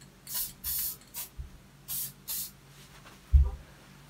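Grumbacher final fixative aerosol can giving five short test sprays, each a quick hiss. A single loud thump follows about three seconds in.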